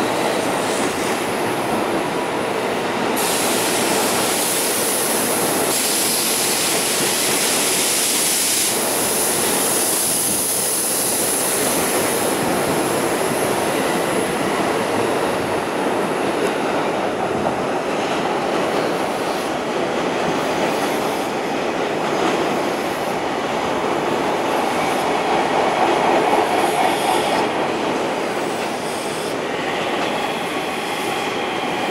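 Tokyo Metro 16000 series electric train running past at close range, with a continuous rumble of wheels on rail. A high hiss rides over it from about three seconds in to about twelve.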